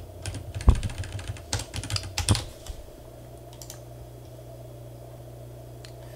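Computer keyboard keystrokes in a quick run of clicks for the first two and a half seconds, one much sharper than the rest, then only a steady low hum.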